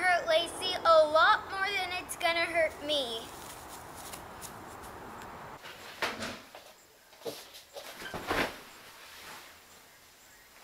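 A girl's voice, rising and falling in pitch, for the first three seconds with no clear words, over a steady background hiss. Then a quieter room with a few short, soft rustles, the loudest about eight seconds in.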